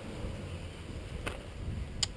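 Low wind rumble on the microphone, with one faint click a little past halfway.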